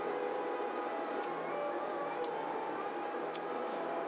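Steady room tone: a low hiss with a faint constant hum and a few faint ticks.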